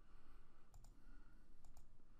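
Two faint computer mouse clicks about a second apart, each a quick pair of ticks, over a low steady hum.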